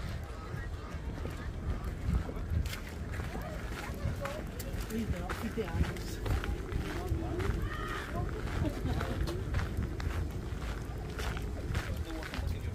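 Footsteps on a gravel path, a steady series of short crunches, with indistinct chatter from people close by and a low rumble on the microphone.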